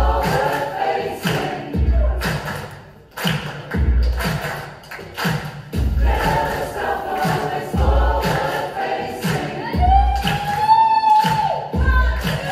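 A large choir of adults and children singing with a backing track that carries a deep drum hit about every two seconds and lighter beats between. The sung line rises and holds high near the end.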